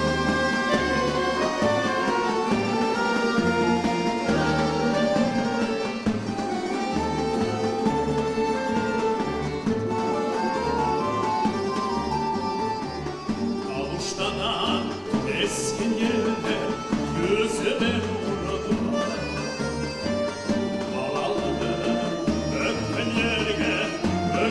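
Folk ensemble playing an instrumental passage, with clarinet and plucked strings over a steady bass pulse. A man's singing voice joins in the second half.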